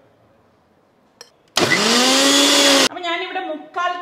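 Electric mixer grinder run in one short pulse of just over a second: the motor's whine rises quickly, holds, and cuts off, grinding spices into powder. A small click comes just before it starts.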